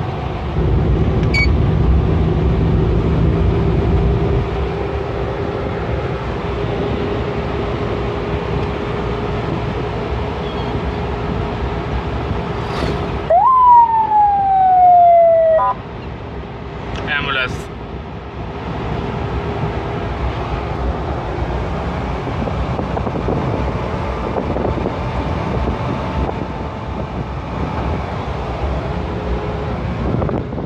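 Ambulance van's engine and road noise while driving, heard from inside the cabin. About 13 seconds in, its electronic siren sounds once: a single falling wail lasting about two seconds, followed shortly by a brief blip.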